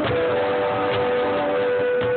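Acoustic guitar and cajón playing together while the singer holds one long steady note, with hand slaps on the cajón's wooden face keeping the beat underneath.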